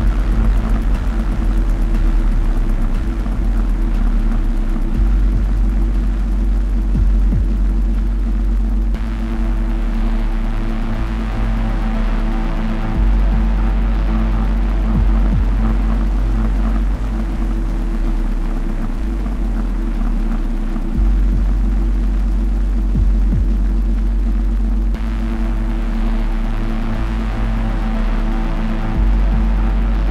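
Dark, droning electronic music played live: heavy deep bass notes that shift every few seconds under sustained tones and a wash of noise, with no steady beat.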